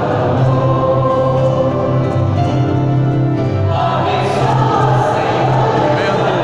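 A church congregation singing a hymn together, many voices holding long, steady notes.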